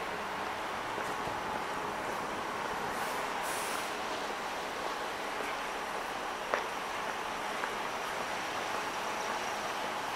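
Night-time street traffic ambience: a steady hum of road traffic, with a short high hiss about three seconds in and a single sharp click a little past halfway.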